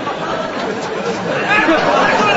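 Indistinct chatter of several people talking over one another, getting louder about one and a half seconds in.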